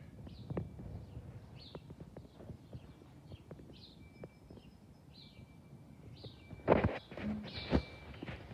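Quiet outdoor ambience with short high bird chirps repeating about once a second and scattered light ticks, then a few louder knocks and a scrape near the end as someone walks in through the sliding back door.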